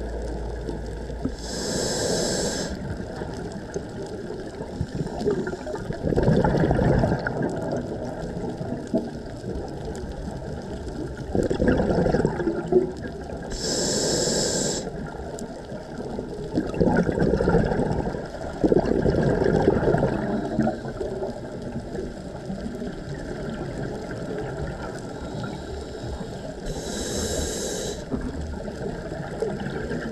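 Scuba diver breathing through a regulator underwater: three inhalations, each a short hiss, with bursts of exhaled bubbles gurgling in between.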